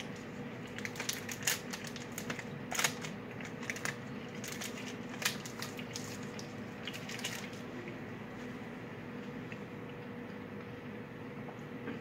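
Close-up chewing and crunching of a chocolate-coated caramel biscuit bar: irregular crisp crunches for the first several seconds, thinning to quieter chewing later on.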